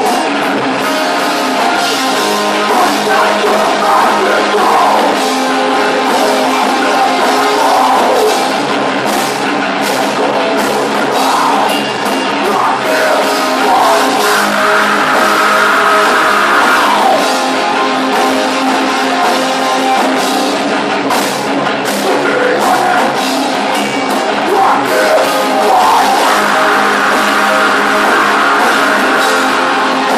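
Live metalcore band playing at full volume: heavily distorted electric guitars, bass and fast drums, continuous and dense, heard from the audience floor.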